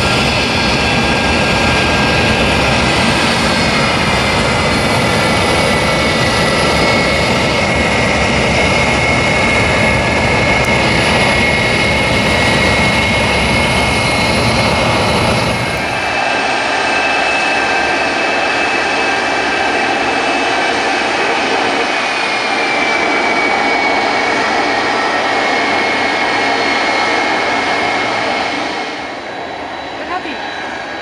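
McDonnell Douglas DC-10 air tanker's jet engines running while taxiing: a steady high whine with several held tones over a deep rumble. About halfway the deep rumble drops out and the whine carries on, one tone gliding slowly; near the end the sound falls somewhat quieter.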